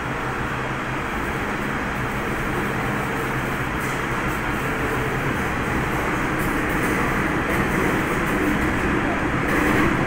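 Interior of an MTR M-Train car (set A143/A146) running between stations: a steady rumble of wheels on rail and traction-motor hum that grows slowly louder.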